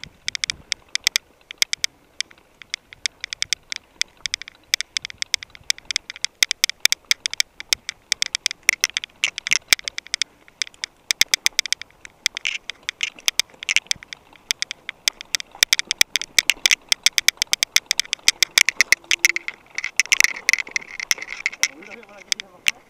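Mountain bike rattling over a rough, rocky dirt trail: a dense run of irregular clicks and knocks, several a second, from the bike and the camera jolting on the bumps.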